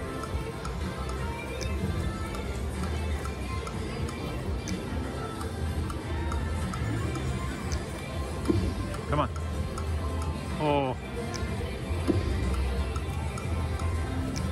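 Ultimate Fire Link China Street slot machine playing its game music and reel-spin sound effects through several spins, over a steady casino hum. About eleven seconds in, a short jingle of quick rising notes sounds.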